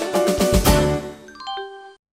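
Short cartoon transition jingle: a quick run of plucked and tapped notes, then near the end a rising string of single bell-like dings that stops abruptly.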